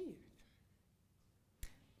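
Near silence in a pause between spoken sentences, broken once about one and a half seconds in by a single short, sharp click.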